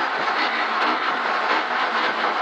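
In-cabin sound of a Ford Escort Mk2 rally car slowing for a hairpin. The engine note drops away at the start as the driver comes off the throttle, leaving a steady rush of tyre and road noise.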